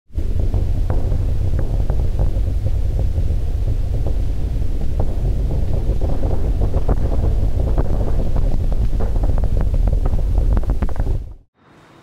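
Saturn IB rocket engines at liftoff: a loud, continuous deep rumble laced with crackles, cutting off about eleven seconds in.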